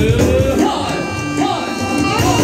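Loud live band music at a wedding: a gliding melody line over a steady drum beat.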